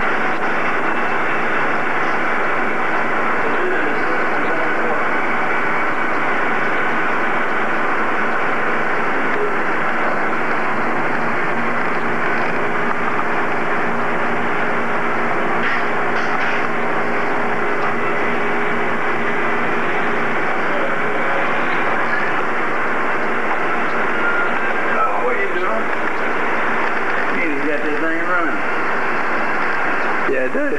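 Indistinct chatter of several voices over a steady background of room noise, too blurred to make out words. A faint steady hum joins for several seconds in the middle, and one voice becomes clearer near the end.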